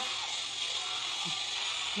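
Steady, even background hiss with no distinct event in it.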